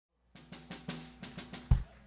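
Drum kit: a quick run of light snare strokes, followed near the end by a loud bass-drum hit.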